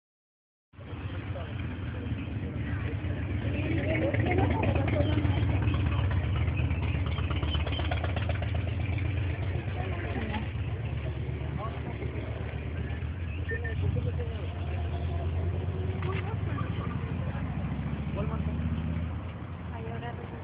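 A low steady rumble under people talking. It starts about a second in and eases a little near the end.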